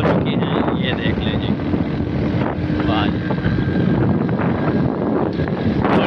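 Wind buffeting the microphone on a moving motorcycle, a loud, steady rush with the bike's engine running underneath.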